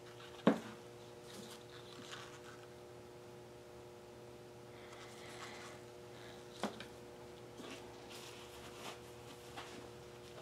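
Light knocks and clicks of small plastic paint cups being handled and set down on a plastic-covered table, the sharpest about half a second in and another about two-thirds of the way through, with a soft rustle in the middle and a steady faint hum underneath.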